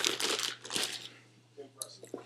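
Crinkling and rustling from sneakers being handled, dense for about the first second, then thinning to a few light crackles.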